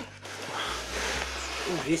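A wooden case sliding and rubbing on a tabletop as it is turned around, with a man's voice starting near the end.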